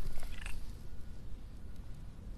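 Domestic cat purring steadily as it is stroked on the head, with a short higher-pitched sound in the first half second.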